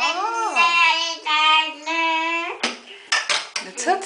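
Toddler's sing-song babbling, with held notes for the first two and a half seconds, then a quick run of sharp knocks.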